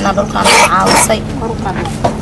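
A woman speaking Somali, her voice loudest in roughly the first second, over a steady low hum.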